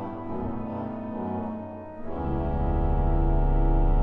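Pipe organ playing a chordal passage. About two seconds in, a louder full chord with deep pedal bass comes in and is held.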